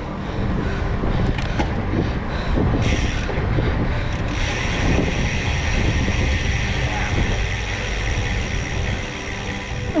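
Wind buffeting the microphone of a moving camera with a cyclist: a heavy, continuous low rumble with hiss above it. The rider's hard breathing after a maximum effort comes through under the wind.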